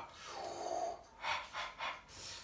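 A man gasping and breathing out sharply, with two short hissing breaths in the second half. He is reacting to the heat of the freshly roasted duck he is handling with his bare hands.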